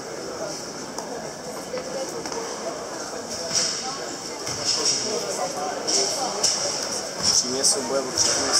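Murmur of spectators chatting in a large sports hall. From about halfway on, a run of short, crisp snaps grows more frequent and louder towards the end, the karateka's gi cracking with her fast strikes.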